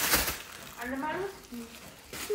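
Rustle of a crinkly fabric pet play tunnel being handled, loudest right at the start, then faint voice sounds.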